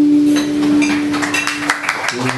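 The last held note of an acoustic guitar-and-voice song ringing on and stopping near the end, while a small audience breaks into scattered hand claps that start about a third of a second in and grow denser.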